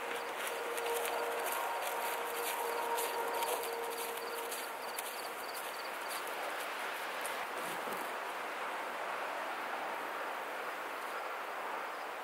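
Footsteps in field grass with the rustle and knock of large canvas decoy bags swinging as a man walks with them. The steps come at a steady walking pace and fade out after about six seconds, leaving a steady outdoor hiss.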